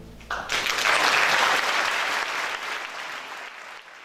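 Concert-hall audience applause breaking out just after the orchestra's final chord dies away, then gradually fading out.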